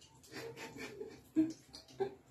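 A woman murmuring and breathing quietly, with one short spoken word about one and a half seconds in.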